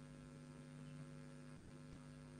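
Near silence with a faint, steady electrical mains hum in the recording, which briefly drops out near the end.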